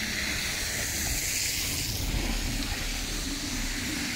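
Steady hiss of outdoor background noise over a low rumble, swelling slightly a second or so in, as of tyres on a wet, slushy road.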